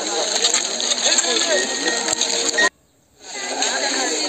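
A crowd of many people talking at once, with a few sharp clicks among the voices. The sound cuts out almost completely for about half a second a little after the middle, then fades back in.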